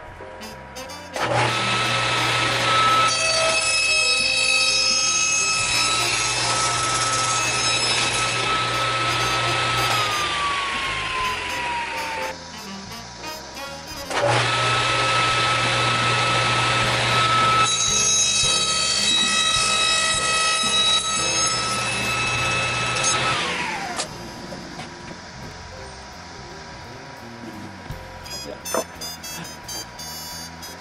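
Table saw switched on twice, each time running steadily for about nine seconds while a Douglas fir 4x4 is passed over the blade in a tenoning jig to cut a tenon, then switched off, its whine falling in pitch as the blade winds down.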